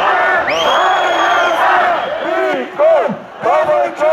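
A large crowd of marchers shouting and cheering, with a shrill whistle held for about a second near the start. From about halfway the crowd falls into a rhythmic slogan chanted in unison, loud bursts with short dips between them.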